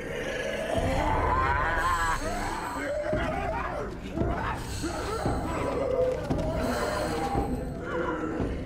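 Film soundtrack: men chanting and wailing like wolves over music with a deep low rumble that swells about a second in.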